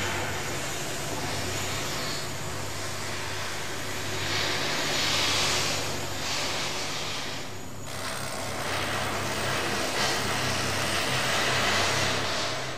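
A motor vehicle engine running with a steady low hum under a loud rushing hiss. The hiss swells around the middle and again near the end, and breaks off abruptly about eight seconds in before resuming.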